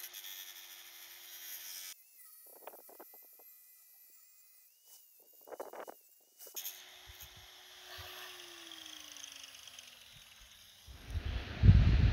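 Angle grinder with a thin cutoff wheel, heard faintly: a steady motor whine, then the pitch falls as the wheel spins down after the trigger is released, near the end. A few short faint sounds in the middle.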